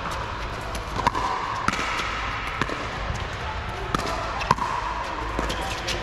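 Pickleball paddles hitting a hard plastic ball in a rally, a run of sharp pocks roughly one a second, with background voices.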